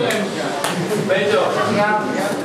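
Several voices talking and singing over one another in a hall, with a few short sharp knocks in the first second.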